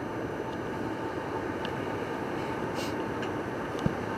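Steady running noise of a moving passenger train heard from inside the carriage, with a few faint ticks and one short knock near the end.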